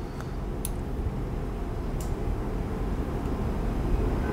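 Steady low background rumble that slowly grows louder, with a couple of faint clicks.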